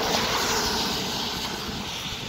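A passing vehicle: a whooshing rush of noise that comes in suddenly and fades away over two seconds, with a faint tone that sinks slightly in pitch as it goes.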